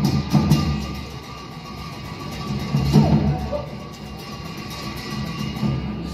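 Tibetan opera (lhamo) dance accompaniment of drum and cymbals beating a fast, even rhythm that eases off about a second in, with another flurry of strokes around three seconds.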